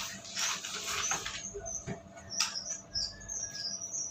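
A toddler's squeaky sandals chirping with her steps, short high squeaks about three a second. Before them, in the first second and a half, there is a rustling noise, and a faint steady hum runs underneath.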